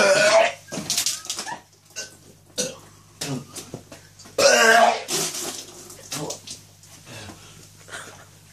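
A man belching loudly twice, once right at the start and again about halfway through, after downing a drink. Shorter grunting vocal noises come between the two belches.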